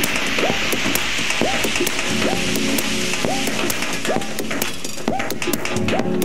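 Techno playing in a continuous DJ mix, in a stretch without the heavy bass kick: quick, evenly spaced ticking hi-hats over a short synth figure whose pitch bends, repeating about twice a second.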